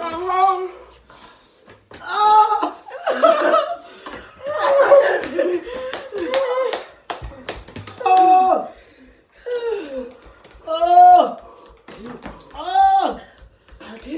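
Women crying out and laughing in wordless, wavering exclamations, a string of separate outbursts every second or two, in reaction to the burning heat of an extremely spicy gummy bear.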